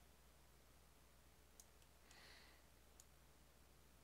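Near silence with a faint steady hum and a few faint computer mouse clicks: two about one and a half seconds in and one at three seconds. A short soft hiss comes between them.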